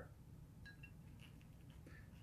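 Near silence: room tone, with a few faint brief ticks a little under a second in.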